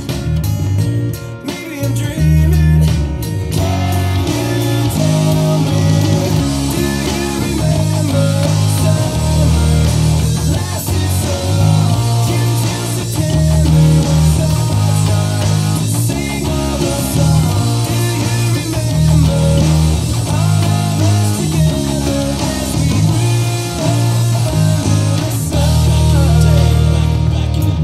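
Ernie Ball Music Man Sterling electric bass played fingerstyle along with a full rock band recording, the bass line loud and prominent in steady pulsing low notes.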